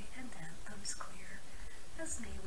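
Speech only: a voice reading verse aloud.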